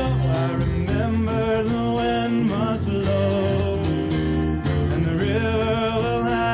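A man singing a folk song live, holding long notes, to his own strummed acoustic guitar.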